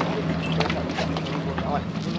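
Idling speedboat outboard engines making a steady low hum, under people's voices and scattered knocks.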